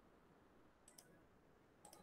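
Near silence with a few faint clicks, one about a second in and another near the end.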